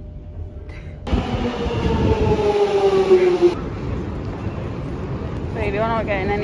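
London Underground train at a platform, its motor whine falling in pitch as it brakes, over a rumble of running noise, until it cuts off sharply about three and a half seconds in. A voice is heard near the end.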